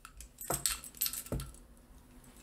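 Stainless steel KF vacuum flange fittings and a metal clamp being handled, giving a few light metal clicks and clinks.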